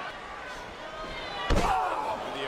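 Arena crowd noise with one heavy thud about one and a half seconds in, as one wrestler's body slams into the other in the ring corner.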